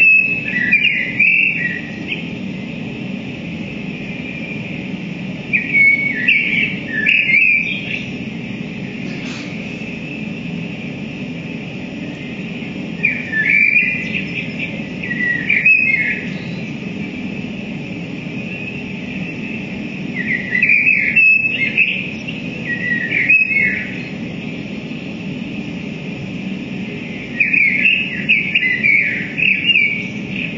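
Experimental electronic sounds played through guitar amplifiers: five clusters of short, bird-like chirps, about seven seconds apart, over a steady low drone and high hiss.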